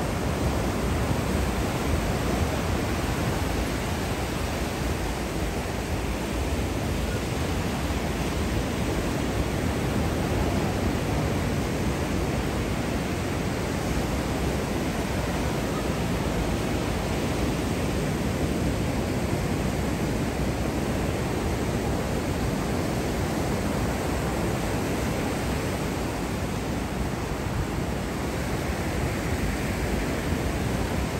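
Ocean surf breaking on a sandy beach: a steady rushing noise without separate crashes standing out.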